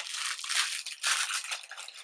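Clear plastic packaging around a hair bundle crinkling as it is handled, an irregular run of crackles.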